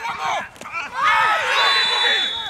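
Several men shouting over one another on a football pitch, players appealing after a challenge in the penalty area, louder in the second half, with a thin steady high tone entering near the end.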